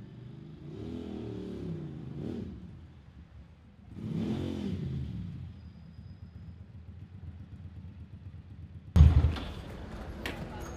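Motorcycle engine running, revved up and back down twice, then idling. A loud thump about nine seconds in.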